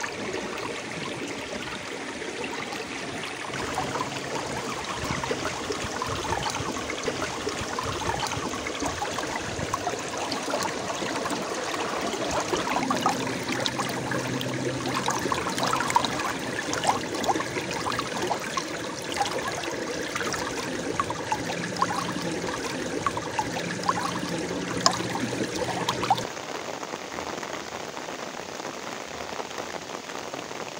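Shallow stream water running and trickling, with small splashes as a hand dips a clear fish tank into the water to release the fish. The splashing dies away a few seconds before the end.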